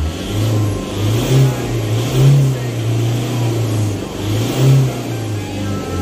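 A parked diesel van's engine being revved in short blips, the engine note swelling and dropping back about three times over a steady running hum, as the engine is run up to circulate a freshly added oil additive.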